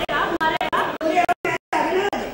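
Several people talking over one another, the voices cut briefly by a dropout to silence a little after the middle.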